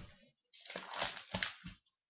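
Rustling and bumping of someone moving close to a webcam microphone, a run of irregular scuffs and knocks that cuts off suddenly near the end.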